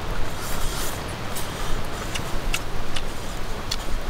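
Wood campfire crackling, with a few sharp pops scattered through, over a steady rush of wind.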